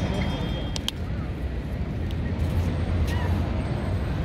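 Steady low rumble of outdoor city ambience, with a couple of brief clicks and faint voices.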